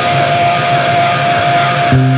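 Improvised experimental rock music recorded on four-track tape, with a dense wash of sound over one steady held high note and a faint regular pulse of strokes above it.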